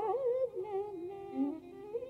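Carnatic raga alapana in Shanmukhapriya: a female voice sings wide, oscillating gamakas that settle into held notes about half a second in, over a steady drone.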